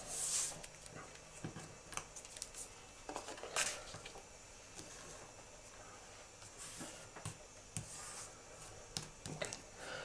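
Paper and card being handled on a wooden table: light clicks and brief rustles as a card page is moved and pressed flat by hand, with a soft sliding, rubbing sound a few seconds before the end.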